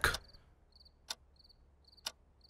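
Crickets chirping, short high chirps about twice a second, as a night-time background. A sharp click comes about a second in and another at the end.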